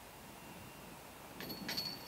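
A disc golf putt hitting the metal chains of a basket and catching high in them: a short jangling rattle of chains about one and a half seconds in.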